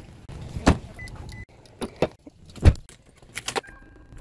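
A string of knocks and clunks in and around a car, with keys jangling as a key goes into the ignition, the loudest clunk a little before the three-second mark. Two brief high beeps sound, one about a second in and one just before the end.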